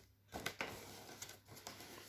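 Faint handling of a cardboard advent calendar box: a few soft taps and clicks with light rustling as it is turned in the hands.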